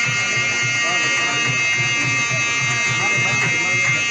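Live wedding music: a wind instrument holds one long steady note over an even drum beat, with guests' voices underneath.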